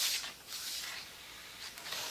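A hand rubbing and sliding over a thin sheet of wood veneer laid on a board: three soft, brushing strokes.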